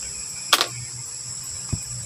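Steady high-pitched background drone of insects over a low hum, with a short handling noise about half a second in and a fainter click near the end.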